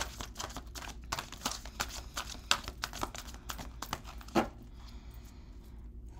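A tarot deck being shuffled and handled: a quick run of papery clicks and snaps of cards against each other, with a few sharper snaps, easing off about four and a half seconds in.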